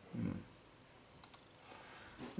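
A few faint computer mouse clicks in quick succession a little past the middle, after a brief low hum of a man's voice near the start.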